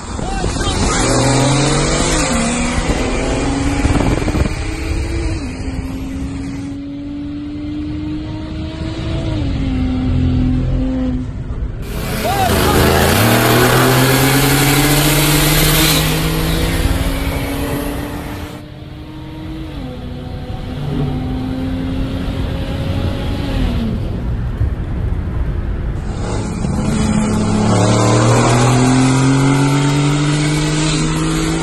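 Performance sedan engines accelerating hard at full throttle, their pitch climbing through each gear and dropping at every upshift, repeated over several short clips. The cars are a turbocharged BMW 335i E92 and a twin-turbo V8 Mercedes-AMG C63 S W205.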